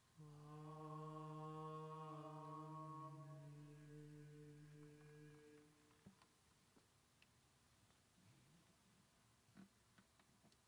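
A low voice holds one long chanted note for about five seconds, dropping slightly in pitch partway through and fading out by about six seconds. A few faint clicks follow.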